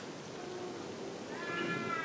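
A faint, high-pitched drawn-out cry, falling slightly in pitch, begins a little past halfway through.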